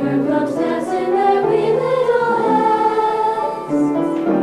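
A group of teenage girls singing a song together, unaccompanied, with one long held note in the second half.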